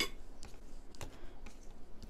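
Quiet handling sounds of hands folding a soft butterbur leaf into a rice wrap on a wooden cutting board: a faint leaf rustle with a couple of light ticks, about half a second and a second in.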